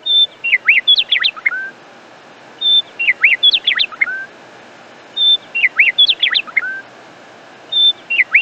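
A songbird's phrase of quick high chirps and whistles ending on a lower note, repeated the same way about every two and a half seconds, four times, over a faint steady hiss.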